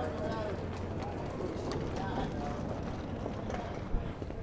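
Footsteps on a concrete sidewalk and general outdoor street sound, with faint distant voices and a steady low hum underneath.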